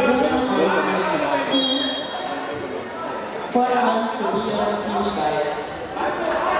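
Voices of several people talking and calling out in a large gym hall, overlapping, with louder voices starting suddenly about halfway through.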